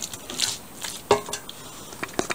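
A wooden spatula stirring spiced raw chicken pieces in a stainless steel pan, with a few light knocks against the metal, the loudest about a second in.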